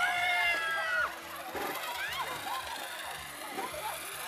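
A person's long, high-pitched yell lasting about a second as a zip-line rider sets off, over background music. Short, fainter vocal sounds follow.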